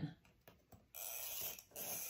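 Yellow chalk roller pen being drawn along a ruler across fabric: two short scratchy strokes, the first a little over half a second long, the second beginning near the end, as the dart line is marked.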